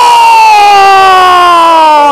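Football commentator's long drawn-out goal cry, one loud held shout sliding slowly down in pitch.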